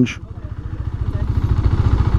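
KTM Duke 390's single-cylinder engine idling with a steady low pulse through its tame-sounding stock exhaust.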